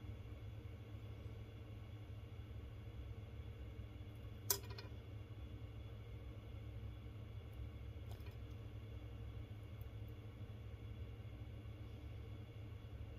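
Quiet steady low hum with one sharp click about four and a half seconds in and a couple of faint ticks later, from fingers handling a thin silver bezel wire around a turquoise stone.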